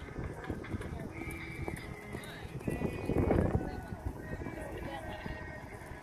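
Hoofbeats of a horse cantering on sand arena footing, louder about three seconds in, heard over background music and voices.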